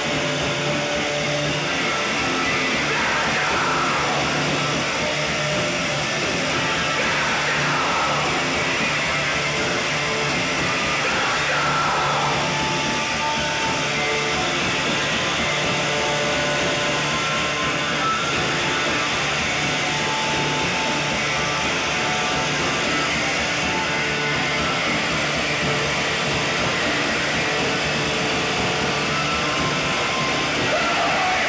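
Live noise-rock band playing loudly, with distorted electric guitar, bass and drums, recorded through a camcorder's built-in microphone in a club. A few sweeping, wailing pitch glides run through the first dozen seconds over a steady, dense wall of sound.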